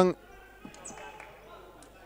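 Faint sounds of futsal play on an indoor wooden court: a few light ball touches and bounces over a low hall background.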